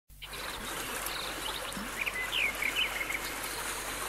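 Steady rushing wind and road noise from riding along a dirt road on a two-wheeler, with a few short bird chirps about two to three seconds in.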